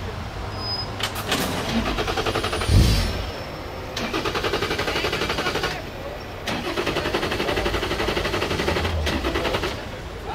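Ford EcoBoost 3.5-litre twin-turbo V6 of a Radical RXC Turbo held on launch control while stationary, its revs stuttering rapidly against the limiter in three stretches, with one louder low burst about three seconds in.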